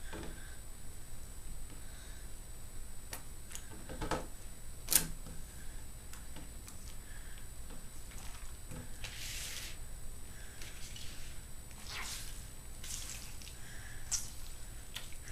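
A damp ShamWow cloth being handled and rolled up on a tabletop: two sharp taps about four and five seconds in, then two soft swishes of the wet cloth rubbing, over a steady low hum.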